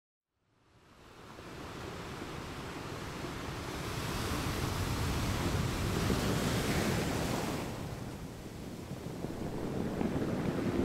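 Ocean surf breaking and washing, fading in from silence over the first second. It builds to a full rushing hiss, then the hiss thins out about three-quarters of the way through.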